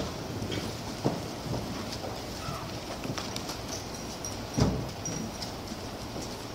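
Low room noise with a few scattered knocks and thumps, a sharp one about a second in and the loudest about four and a half seconds in.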